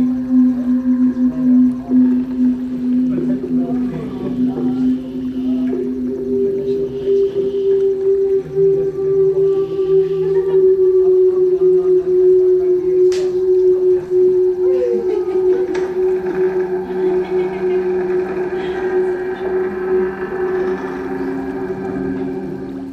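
Film score music of long held low notes: one sustained note gives way to a higher sustained note about five seconds in, with fainter held tones above it.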